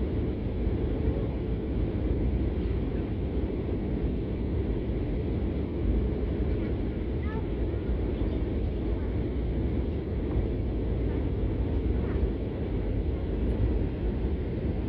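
Steady low rumble inside an airliner's cabin on approach: engine and airflow noise heard from a window seat during the descent.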